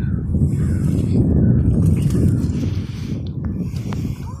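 Wind buffeting the microphone, a heavy, gusting rumble, with a couple of light clicks near the end.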